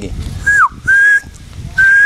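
A person whistling to call dogs over for food scraps: three short whistles, the first dropping in pitch, the other two held level.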